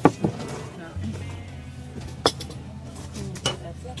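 Background music with a steady low tone and a murmur of voices, broken by a few sharp knocks of glass bottles and glasses on the table. The loudest knock comes right at the start, and two more come about two and three and a half seconds in.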